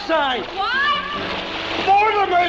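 Water splashing as people swim and tread water, with high-pitched voices calling out over it.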